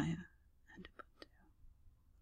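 A woman's voice finishing a spoken phrase, then a few soft, breathy, half-whispered words.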